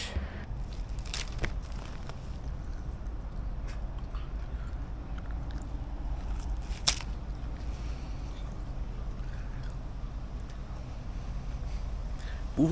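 Steady low outdoor rumble with a few faint clicks, and one sharp crisp snap about seven seconds in as a man bites into a fresh tree leaf.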